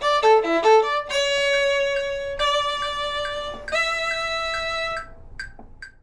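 Solo viola playing an excerpt: a quick run of short notes, then three long bowed notes, the last ending about five seconds in and dying away.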